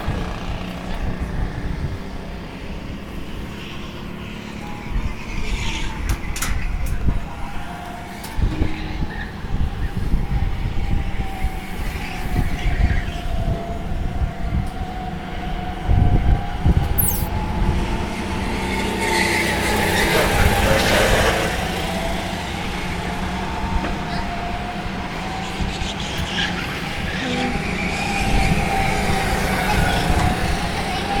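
Several go-kart engines running laps, their pitch rising and falling as the karts pass. One kart passes close and loud about two-thirds of the way through. A steady low rumble runs underneath.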